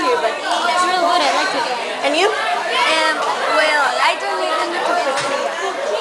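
Chatter: several young voices talking at once, with no other sound standing out.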